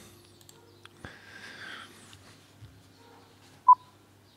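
Quiet room tone with a faint click about a second in, then one short, sharp electronic beep near the end as the video starts playing.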